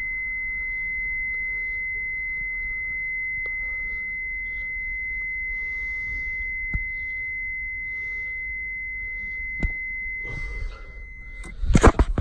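Honda Jazz's dashboard warning buzzer, a steady high-pitched tone sounding with the headlights switched on. It cuts off about half a second before the end, followed by loud knocks and rustling.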